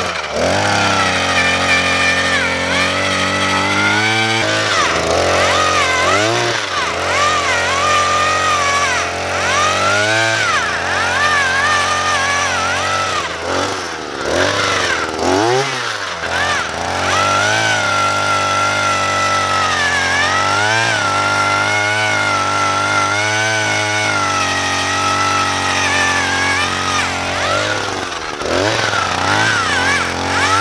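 Harbor Freight Predator two-stroke gas earth auger running under load as it bores a post hole in soil. The engine pitch dips and recovers again and again as the bit bites and then frees up.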